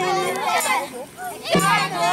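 A group of children's voices shouting and chanting over one another. A short steady low tone comes in about every two seconds.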